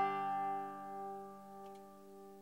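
Five-string resonator banjo's last fingerpicked chord ringing on and fading away, with no new notes picked.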